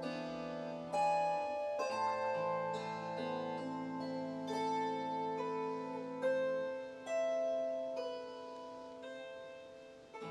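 Concert kanteles plucked in a slow melody, each note ringing on under the next, with a new pluck about every second. The sound fades out near the end.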